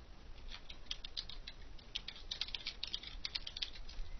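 Typing on a computer keyboard: quick, irregular keystroke clicks, sparse at first and coming thick and fast from about a second in, over a faint low hum.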